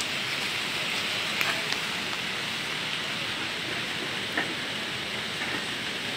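Steady light rain falling, an even hiss, with a few faint clicks.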